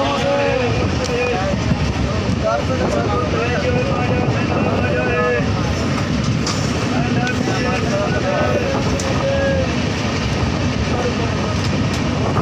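Passenger train running, heard from an open coach door: a steady rumble of wheels on the track mixed with wind on the microphone, with voices chattering faintly underneath.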